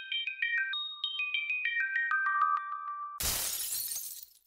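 Short outro jingle: two runs of quick, high plinked notes, about five a second, each stepping down in pitch, followed about three seconds in by a sudden loud crash-like sound effect that fades out over about a second.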